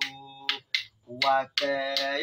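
A man's voice singing a chant in long held notes, with a sharp hand click keeping time about twice a second. The singing breaks off briefly around the middle.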